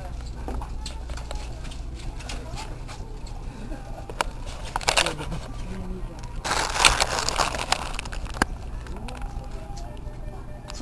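Indistinct voices over a steady low hum, with scattered clicks and a louder rush of noise about six and a half seconds in.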